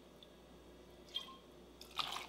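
Bourbon poured from a bottle into a steel jigger: a faint trickle, with a brief splash about a second in and a sharper splash right at the end.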